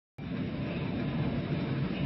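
Steady low rumble with a hiss over it from on board an LPG gas carrier under way at sea: the ship's engine drone mixed with wind and sea noise.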